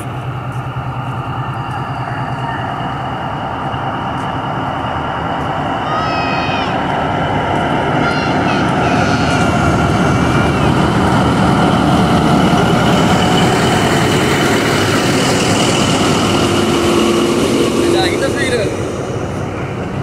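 Pakistan Railways GE U20C diesel-electric locomotive pulling a passenger train out of the station, its engine running steadily and growing louder as it passes close by. A few brief high squeals come about six and eight seconds in.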